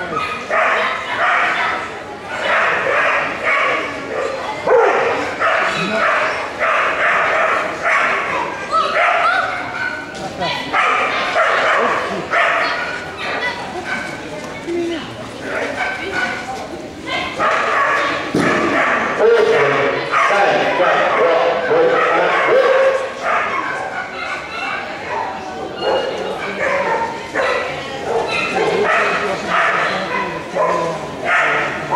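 Belgian Groenendael shepherd dog barking over and over, about two barks a second, as it runs an agility course. The barking is excited, with only brief pauses.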